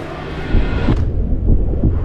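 Deep bass rumble from a trailer's sound design, building about half a second in, with the higher sounds fading out about a second in.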